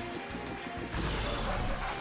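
Online slot game's background music with reel-spin sound effects as the reels spin and come to a stop, getting a little louder about a second in.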